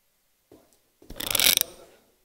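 Microphone handling noise as the presiding councillor's handheld mic goes live: a faint click, then a short rattling scrape about a second in that fades before he speaks.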